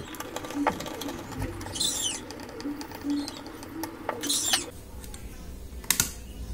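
Fast-forwarded handling and screwdriving on a plastic speaker box: rapid clicks, chirps and two brief scratchy bursts, then quieter handling.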